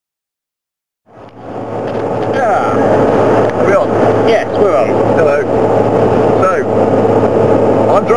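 Steady road and engine noise inside a moving car's cabin, fading in from silence about a second in, with voices talking over it.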